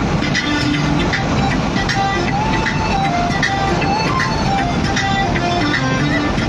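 Music with held melodic notes playing over a car stereo inside a moving vehicle's cabin, over steady road and engine noise.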